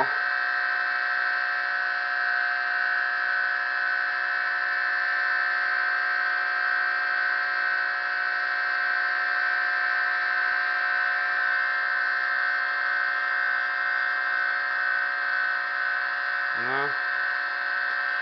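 Home-built Bedini-style pulse motor running at its top speed: a steady high-pitched whine from the magnet rotor spinning past the pulsed coils. The motor won't go any faster, which the builder puts down to power loss through the alligator-clip leads.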